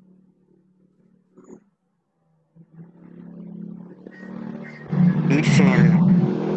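Video-call audio: a low, rough hum from an open microphone that cuts out briefly about two seconds in, then comes back and grows louder. A voice comes in near the end.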